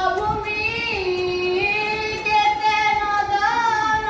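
A young man singing solo in a high voice, without accompaniment: long held notes with wavering, gliding turns between them.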